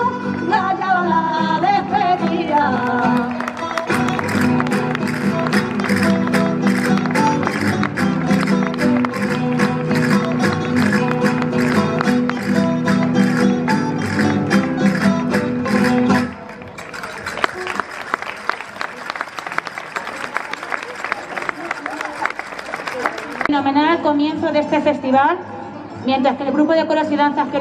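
Live Spanish folk song-and-dance music, singing over instruments with a fast clicking percussive beat, that stops abruptly about sixteen seconds in. The audience then applauds for several seconds, and voices come in near the end.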